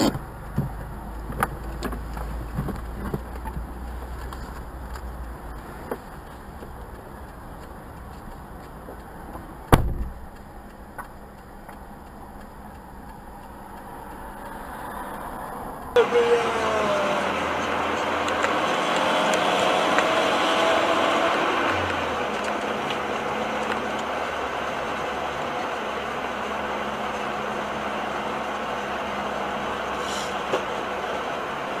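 Dashcam recording inside a car: steady engine and road rumble in city traffic, with a sharp knock just before ten seconds in. After a cut, louder steady tyre and wind noise at highway speed.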